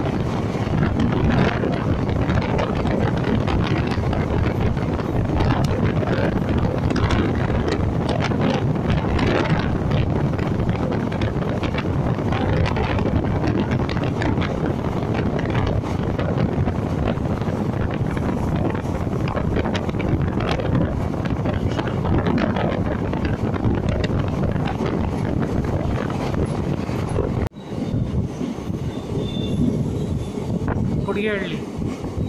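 A DEMU passenger train running at speed, heard at an open coach doorway: steady wheel-and-rail rumble with wind rushing past. The sound drops out for an instant near the end.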